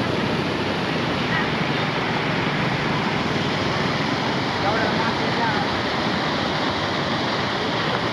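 Swollen, rain-fed river in flood spilling over a low ledge across its channel: a steady, loud rush of churning water.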